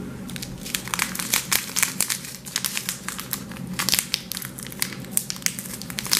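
A small plastic bag of confetti glitter crinkling as it is handled and opened: an irregular run of crisp crackles.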